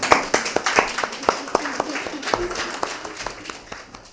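Audience applauding, the clapping thinning out and fading toward the end.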